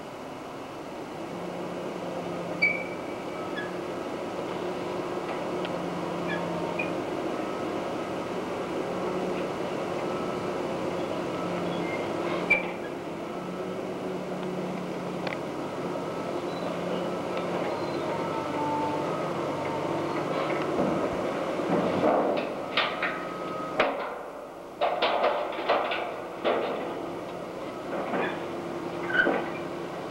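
Steady low mechanical hum of machinery running, with a run of short sharp knocks and clanks in the last third.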